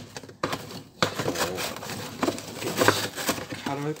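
A blade cutting and tearing through a cardboard package: irregular scraping and ripping with sharp clicks, broken by a short pause just before a second in.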